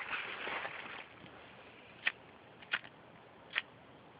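Plastic bag rustling for about a second as a hand rummages in it, then four short, sharp clicks spread over the next two seconds from a cold butane lighter being handled and thumbed.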